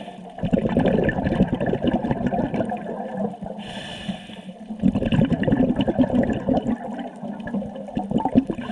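A scuba diver breathing through a regulator underwater: a long bubbling rush of exhaled air, a short hissing inhale about three and a half seconds in, then another long bubbling exhale.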